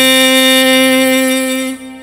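A man's voice holding one long, steady sung note, which fades out about three-quarters of the way through and leaves a faint low drone.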